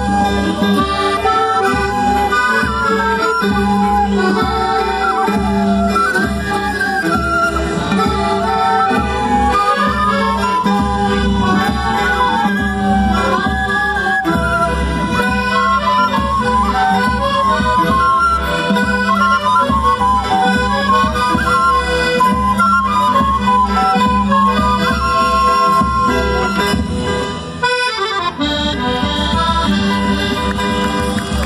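Andean festival band music for the Qhapaq Negro dance: a busy folk melody over a steady drum beat, with a brief dropout about two seconds before the end.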